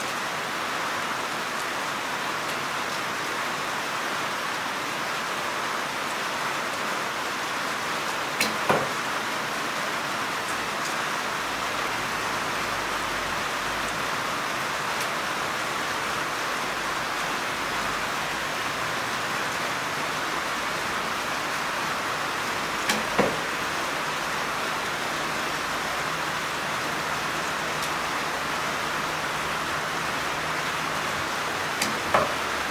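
Heavy rain falling steadily. Twice, about eight seconds in and again about twenty-three seconds in, a short pair of sharp knocks sounds through it, fitting a longbow shot: the string snapping forward on release, then the arrow striking the target a moment later.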